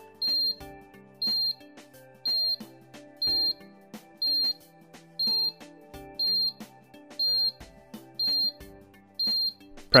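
Alarm keypad beeping during a wireless radio range test with a newly paired motion sensor, while the signal-strength reading climbs to 9/9. Short, high, identical beeps come about once a second, ten in all.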